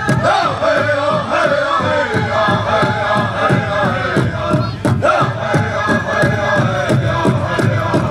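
A group of singers sings a 49 song in unison, chanting vocables over a steady drumbeat of about four beats a second.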